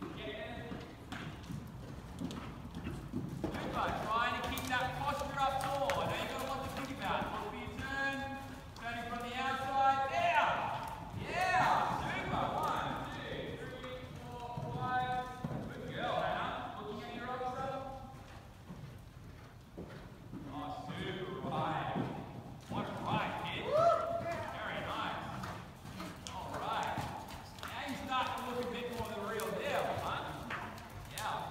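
Horse's hoofbeats on the soft dirt footing of an indoor riding arena as it canters a jump course. A person's voice talks over them for much of the time, pausing for a couple of seconds midway.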